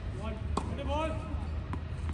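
Tennis ball bounced on a hard court, two sharp knocks about a second apart.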